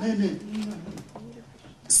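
A low, drawn-out hummed voice sound like a long 'mm' for about a second, then fading away.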